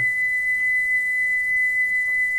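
A single steady high-pitched test tone at about 2 kHz from a Sony TC-765 reel-to-reel deck. The deck is playing the 4 kHz section of a Magnetic Reference Laboratory calibration tape at 3¾ inches per second, half the speed it was recorded for, so the tone comes out at half its pitch. The pitch of the tone shows the tape speed being calibrated.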